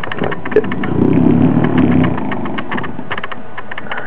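Small homemade Newman-type motor running, its permanent-magnet rotor spinning inside a wire coil, with rapid clicking from its commutator contacts. A louder, rough whirring swells for about a second in the middle.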